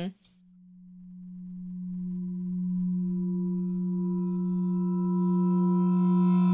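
A sustained low electronic drone tone that fades in over about two seconds and then holds steady, with higher overtones building near the end, serving as a transition into a sponsor break.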